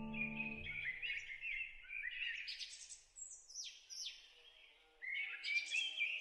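A songbird chirping and calling in a run of bright, high phrases, several sweeping down in pitch. A soft music chord fades out under it in the first second.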